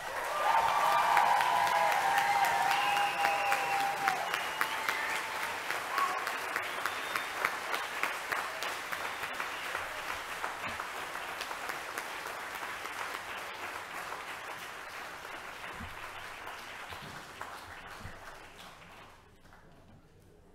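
Large audience applauding, loudest at the start and then gradually dying away over about twenty seconds.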